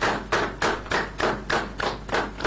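Hands clapping close by, in an even beat of about three to four claps a second.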